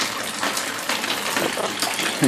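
Steady rush of water from a leaking roof coming into the room, with faint scattered patters.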